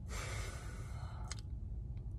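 A man's audible breath, like a sigh, lasting a little over a second and ending in a small click, over a steady low rumble of the car cabin.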